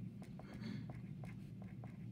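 Pen writing on paper: short scratching strokes and light taps, with a longer scratch about half a second in, over a steady low hum.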